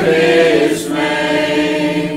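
Church choir of mixed men's and women's voices singing a hymn, holding long notes.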